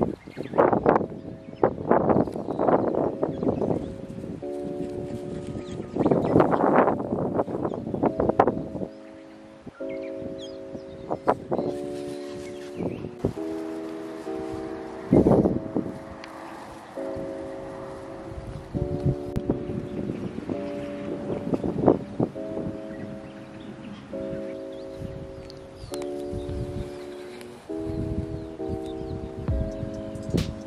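Gentle instrumental background music with bell-like sustained chords changing every second or two, over irregular bursts of rustling in the grass that are heaviest in the first eight seconds.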